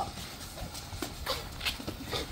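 A handful of light taps and scuffs, about five or six in two seconds: boxing gloves working focus mitts and sneakers shuffling on concrete during a pad drill.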